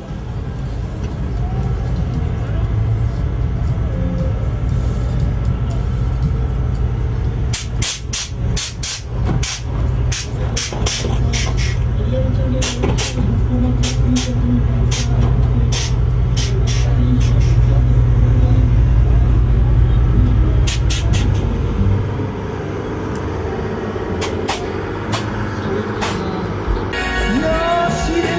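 A vehicle engine running with a loud, steady low rumble that eases off near the end. From about a quarter of the way in, it is joined by a long series of short, sharp hisses.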